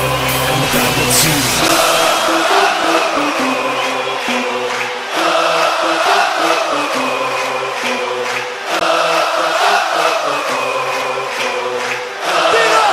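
Music with a crowd chanting or singing along, the chant repeating in phrases of about three seconds.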